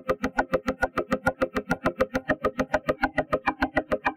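Fast, evenly repeating plucked synth notes, about eight a second, run through the TugSpect spectral FFT processor, which carves resonances shaped by the loaded image out of them. The upper tones shift from note to note as the image is scanned.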